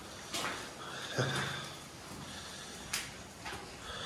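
Heavy rain pouring outside, heard from inside a derelict building as a steady hiss, with a few faint knocks. It is absolutely bucketing it.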